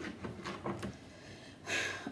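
Faint handling of a tarot card deck: a few light clicks of fingernails on the cards, then a short rustle near the end as the deck is turned over.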